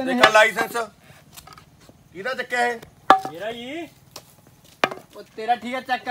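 Short stretches of men's speech with a few sharp clicks or taps in the pauses between them, the loudest tap near the end.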